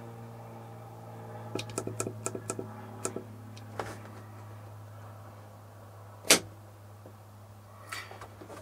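Several light clicks from the push buttons on a battery monitor panel, then one sharp click about six seconds in from the ON/OFF rocker switch that works a remote solar disconnect solenoid. A steady low hum runs underneath.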